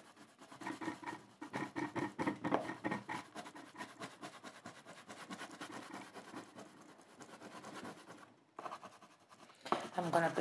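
Grey oil pastel stick rubbed in quick back-and-forth strokes over black oil pastel on paper, a soft scratchy scrubbing that blends the black shadows to a lighter grey. The strokes pause briefly near the end.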